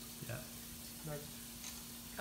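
Steady hiss and a low, even hum of room tone, with a few faint snatches of voices in the background.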